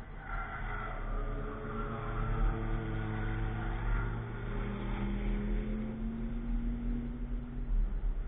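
Car engine passing on a race track: its pitch falls for the first few seconds as it slows for the corner, then rises steadily as it accelerates away and drops off near the end. A constant low rumble runs underneath.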